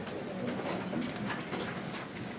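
Indistinct low murmur of people talking quietly in a large meeting room, with small clicks and rustles.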